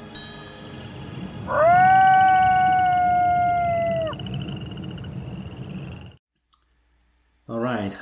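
A wolf's howl: one long call that rises quickly, holds steady for about two and a half seconds and then breaks off, over soft background music that stops shortly after.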